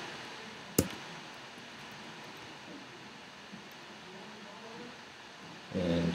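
A single sharp click of a computer keyboard key being pressed, about a second in, over a steady faint room hiss.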